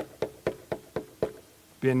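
Knuckles rapping on a lectern: about six quick knocks, some four a second, with a slight ring, acting out a knock at a door.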